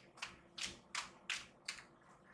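A tarot deck being shuffled by hand, the cards sliding and slapping together in a run of short soft swishes, two or three a second.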